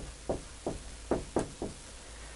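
Marker writing on a whiteboard: about six short strokes, each a brief squeak that falls in pitch.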